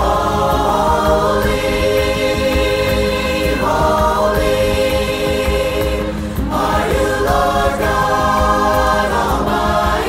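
Virtual choir of mixed men's and women's voices singing together in long held chords, moving to a new chord every few seconds with brief breaths between phrases.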